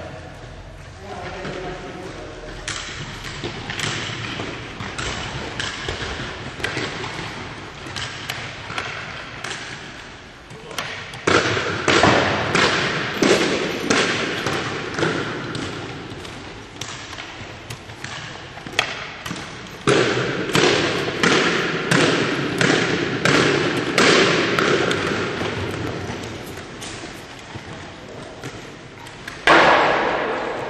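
Jumping stilts (powerbocks) landing again and again on a hard sports-hall floor: a run of echoing thuds, one or two a second, getting louder about a third of the way in.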